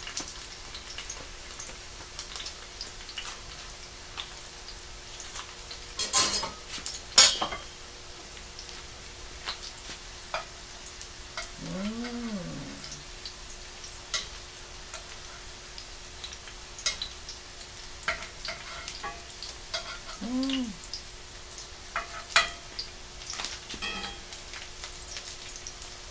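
Cauliflower fritters frying in oil in a pan, a steady crackling sizzle with scattered pops. A few sharp clatters come about six to seven seconds in, and two brief rising-and-falling vocal sounds come later, one near the middle and one shorter one a few seconds after.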